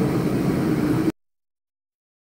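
Steady machine-like hum over a noisy background, cutting off suddenly about a second in.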